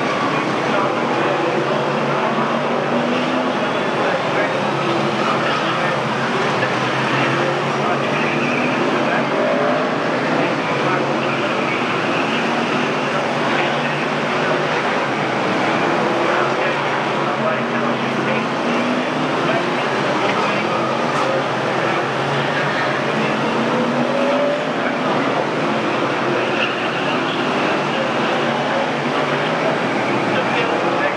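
BriSCA F1 stock cars' V8 race engines running around the track, a steady loud din with a voice talking over it.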